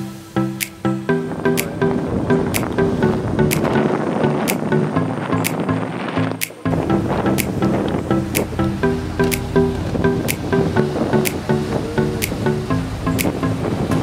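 Tropical house background music with a steady beat of about one sharp hit a second over repeating synth chords. The music briefly dips about six and a half seconds in, then comes back with deeper bass.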